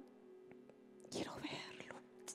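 A woman saying one word in a soft, breathy whisper, about a second in, over a faint held musical note.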